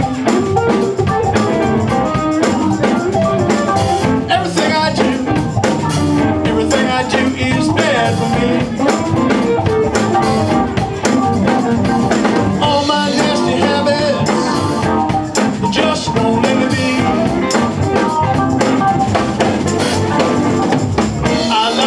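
A live band playing: electric guitars over a drum kit, with the drum strikes coming through steadily.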